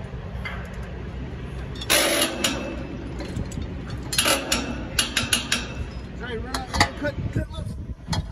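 A long-handled socket wrench being worked on the steel bolts of a tower-crane mast: short bursts of metal scraping and clinking about two, four and five seconds in, then a few sharp clicks, over a steady low rumble.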